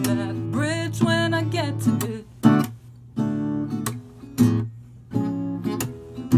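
Acoustic guitar strumming chords under a sung line for the first two seconds or so. After that the chords come in short strummed groups with brief gaps between them.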